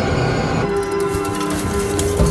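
Electroacoustic music: a held chord of steady tones over a dense, rumbling wash of sound like waves, with fast, fine percussive clatter running through it.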